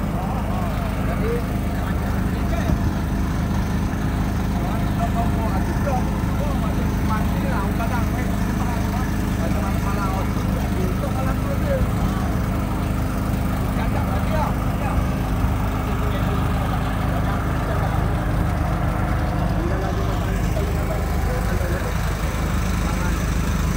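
A small engine running steadily with a low hum, with faint indistinct voices behind it.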